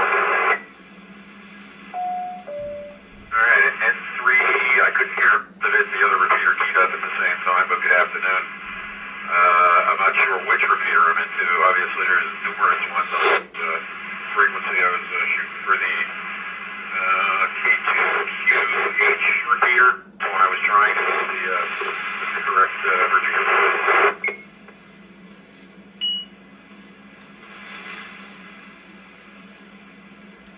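Voices received over an amateur radio transceiver's speaker: thin, narrow-band on-air speech that runs for about twenty seconds, then stops, leaving hiss and a steady hum. A two-note falling beep sounds about two seconds in, before the talking starts.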